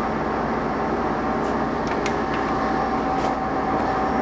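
Ganesh GT-3480 hollow spindle engine lathe running steadily in its high spindle-speed range, an even gear hum and whine from the headstock, with the power cross feed driving the cross slide. A few faint ticks sound over it.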